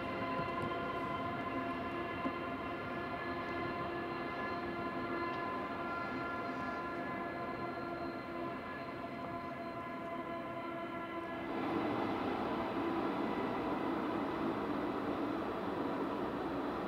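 A steam-hauled train heard at a distance, behind the Beyer-Garratt AD60 locomotive 6029. A long steady note with several overtones holds until about eleven seconds in, then gives way to the noisy rumble of the train running.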